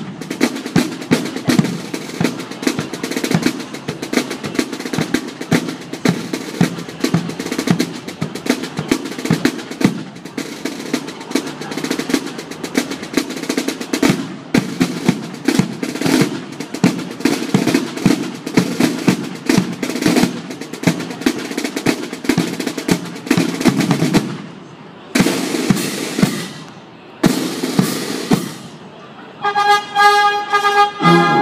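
Military band side drums (snare drums) with bass drum playing a fast drum display, dense rapid strokes throughout. Near the end the beating gives way to two sustained rolls of about a second and a half each, and brass comes in at the very end.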